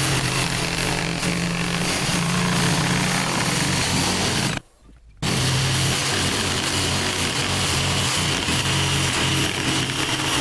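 Corded jigsaw cutting a curved arch into a weathered two-by-eight board, running steadily. It stops for about half a second a little before halfway through, then starts again.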